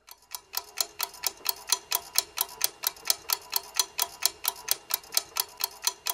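Quiz-show countdown timer: a ticking-clock sound effect, steady at about five ticks a second. It marks the thinking time running while the team prepares its answer.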